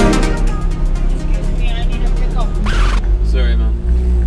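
Ferrari F430's V8 idling, a low steady rumble heard from inside the cabin. Electronic background music fades out within the first second.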